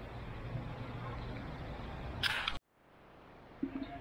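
Steady outdoor background noise of a parking lot, with a faint low hum in the first second or so. About two and a half seconds in, a short burst of noise, then the sound cuts off dead and the background slowly fades back in: a join between two recordings.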